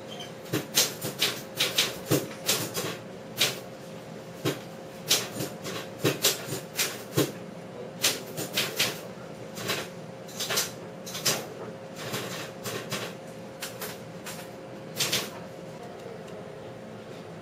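A small long-haired Chihuahua sniffing right at the microphone: quick short sniffs in irregular runs, clicking like a typewriter.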